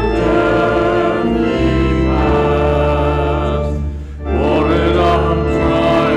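A congregation singing a hymn together to sustained organ accompaniment, with a brief pause between lines about four seconds in.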